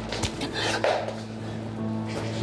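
A sudden clatter of hard objects knocking together, in two bursts within the first second, over soft background music.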